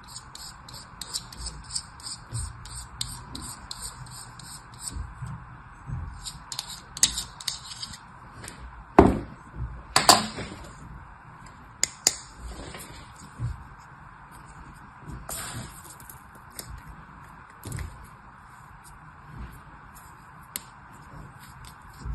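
Small knife scraping dry, crumbly starch mixture packed in a plastic mould, a quick run of gritty scratches. About nine and ten seconds in come two loud knocks, then scattered crackles and clicks as the plastic mould is handled and filled again.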